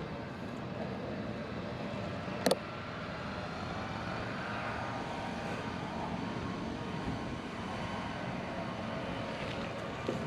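Steady outdoor background noise with no clear single source, broken by one sharp click about two and a half seconds in.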